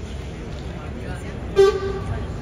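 A single short, loud vehicle horn toot about a second and a half in, over a steady background of outdoor street noise.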